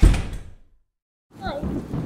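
A single loud bang right at the start, heavy and low, dying away over about half a second. From about one and a half seconds a voice follows, its pitch gliding up and down.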